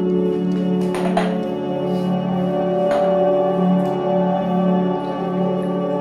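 Background film music: a sustained drone chord held steadily, with two brief clicks about a second in and about three seconds in.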